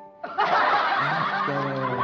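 A young man laughing close into a handheld microphone: a loud, breathy burst of laughter starting a moment in and lasting most of two seconds, over soft background music.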